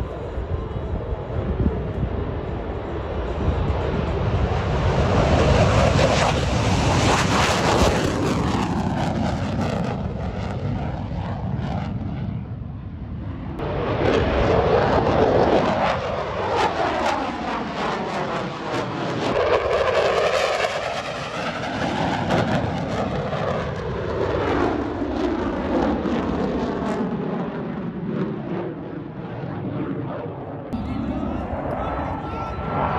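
Fighter jet engine noise as a single jet flies past and climbs away. It swells several seconds in, eases briefly around the middle, then swells loud twice more before settling.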